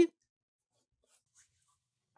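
A man's voice finishing a word, then near silence: room tone.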